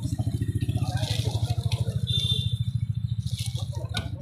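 A vehicle engine idling with a rapid, even chugging pulse that drops away at the end, with people talking faintly underneath.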